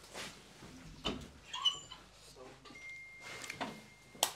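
Soft scattered knocks and rustling in a small room as a door or cupboard is opened and someone moves about handling things.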